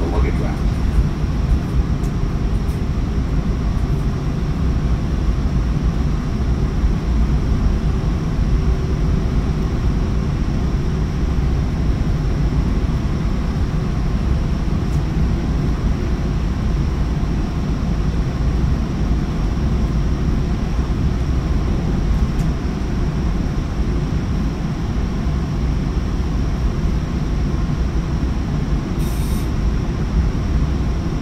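Steady low rumble and rush of a Sounder commuter train running at speed, heard from inside a Bombardier bilevel cab car, as it passes close alongside a freight train on the next track. A brief hiss sounds near the end.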